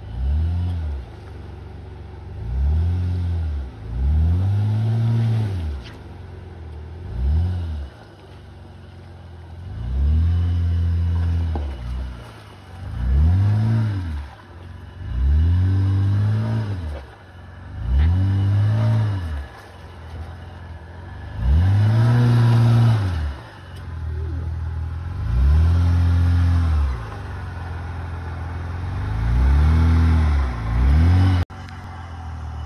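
A lifted first-generation Honda Ridgeline's 3.5-litre V6 revs up and down in short bursts, about a dozen times, as the truck crawls over mud and rocks. Each burst rises and then falls in pitch, with the engine idling between them.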